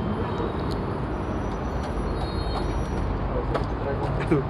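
Steady city street traffic rumble, with faint high thin whistling tones coming and going in the middle.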